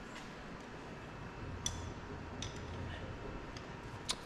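A few faint, separate metallic clicks of a hand wrench being worked on a truck engine, about half a second to a second apart, over a low steady hum.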